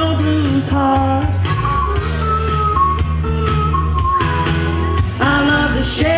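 A woman sings live through a microphone and PA over a country-rock backing with a steady bass and drum beat.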